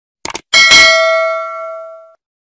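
Subscribe-button sound effect: a quick double click, then a single bell ding about half a second in that rings out and fades over about a second and a half.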